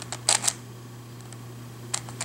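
Plastic layers of a WitEden 3x3 Mixup Plus puzzle cube being turned by hand: a quick run of sharp clicks in the first half second as the layers snap round.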